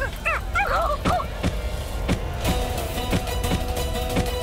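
A woman's anguished, wailing cry for about the first second, then dramatic soundtrack music with held notes and a steady drum beat.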